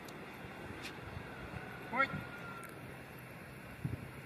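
A single short voiced call about two seconds in, over a steady background hiss.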